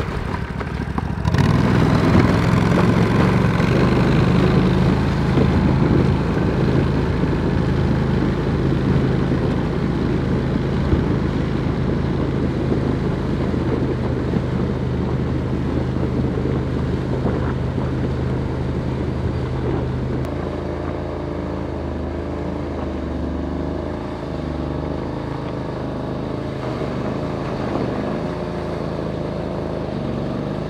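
Engine of an Argo 8x8 Frontier amphibious ATV running steadily as it drives into a pond and churns through shallow muddy water. The engine note gets louder about a second in and changes to a lower, wavering note about twenty seconds in as the vehicle moves out into the water.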